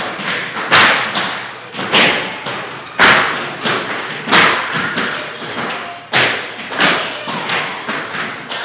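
Children's tap shoes stamping and tapping on a wooden studio floor: a loud thump about once a second, with lighter taps between.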